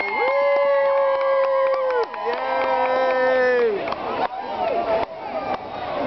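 A horn sounds two long blasts of about two seconds each. Each blast is a chord of several steady tones held together, with a short break between them. Crowd cheering and voices follow.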